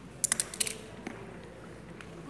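A quick run of sharp clicks about a quarter of a second in, then faint room tone.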